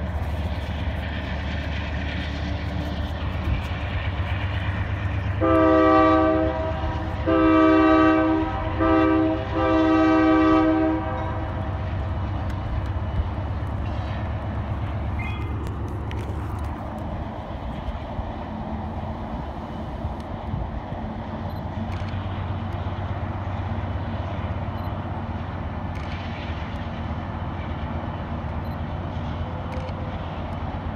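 Diesel freight locomotive's air horn sounding four blasts, long, long, short, long, the grade-crossing signal, over the steady low rumble of the passing freight train.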